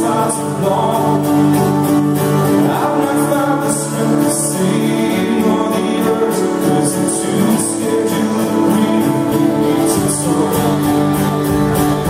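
Live band playing a song with acoustic and electric guitars, upright bass and keyboard, with a male lead vocal singing over sustained chords.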